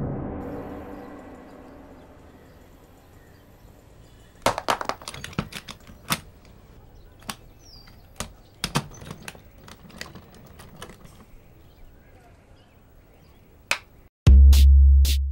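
A reverberant music hit dying away over the first two seconds, then faint ambience broken by irregular sharp clicks and knocks, most of them between about four and eleven seconds in.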